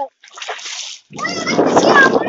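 Footsteps in rubber slippers splashing through shallow rainwater on a flat concrete roof, with a voice over the splashing in the second half.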